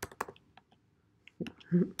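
Typing on a computer keyboard: a quick run of keystrokes at the start, then a pause. A short laugh near the end.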